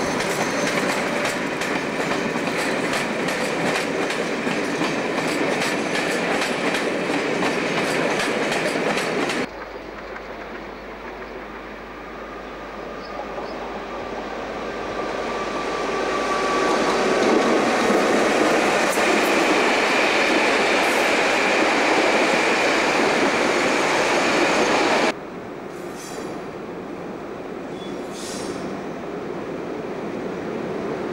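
Electric locomotive-hauled trains running on the rails, in three shots joined by sudden cuts. First a Class 86 electric locomotive with a fast, even clicking of wheels over rail joints and points. Then a Class 90 hauling coaches, growing louder as it approaches and passes, and finally a quieter Class 90 at a platform with a few brief wheel squeals.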